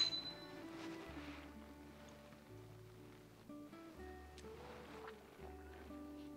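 Two wine glasses clinking in a toast: one bright chink that rings briefly and fades within about half a second. Soft background music follows.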